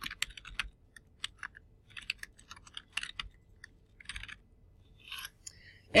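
Typing on a computer keyboard: irregular keystrokes in short runs with brief pauses between them.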